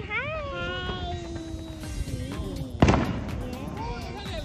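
A long drawn-out vocal exclamation that slowly falls in pitch, then one sharp bang from a small consumer firework a little under three seconds in.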